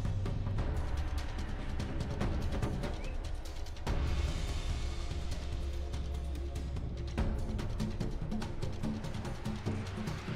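Background music with deep, sustained low notes and frequent drum hits, the low notes swelling about four seconds in.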